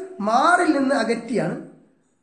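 A man speaking, his voice trailing off near the end.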